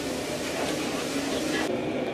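Steady hiss of the charcoal fire burning in an open barrel roasting oven, with faint voices in the background; the hiss drops away near the end.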